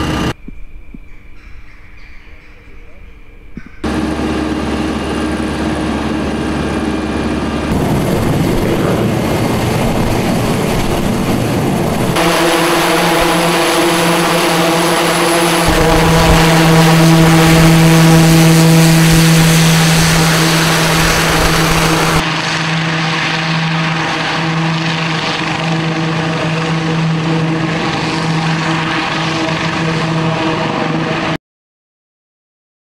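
Eurocopter X3 hybrid helicopter's twin turboshaft engines, main rotor and side-mounted propellers running, heard across several edited shots with steady tones and a rushing noise. The sound changes abruptly at each cut and is quieter for the first few seconds.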